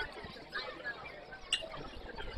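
Distant, indistinct voices and chatter around a baseball field, with one sharp click about one and a half seconds in.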